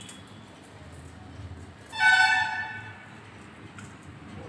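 A vehicle horn honks once, a pitched blare about a second long starting about two seconds in.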